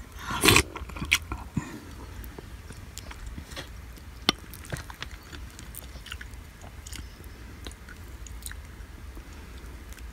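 Close-up sounds of a person eating: a loud burst of noise about half a second in, then chewing with scattered sharp clicks.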